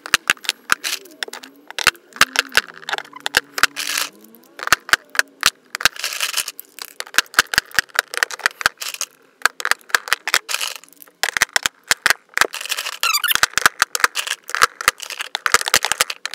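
Lipstick and lip gloss cases clicking and clattering against each other and against a plastic grid organizer as they are dropped into its cells, a rapid irregular run of small sharp clicks and knocks.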